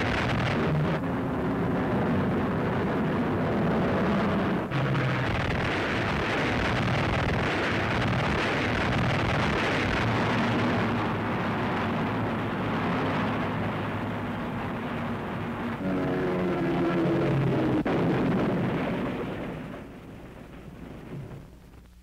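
Aircraft engines droning loud over dense rushing noise on an old film soundtrack, the sound changing abruptly a few times and fading away near the end.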